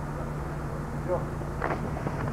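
A steady low hum, with brief indistinct voices about a second in and again near the end.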